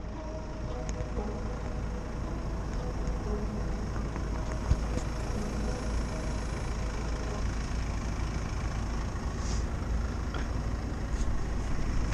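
Car-park traffic: cars with their engines running give a steady low rumble, with one brief knock a little under five seconds in.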